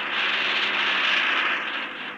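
Mahindra police jeep driving up a dirt track and braking to a stop, its tyres scrubbing over the dirt and gravel with the engine running underneath. The sound is steady and eases off near the end as the jeep halts.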